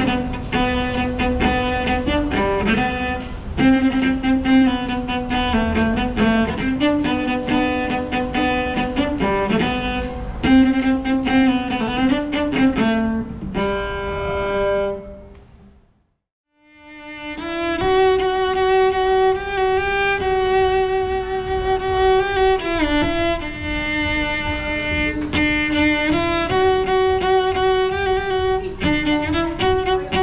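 Solo cello played with the bow: a tune of quick, evenly bowed notes that fades out about halfway through, then comes back as a slower melody of long held notes with gliding changes between them.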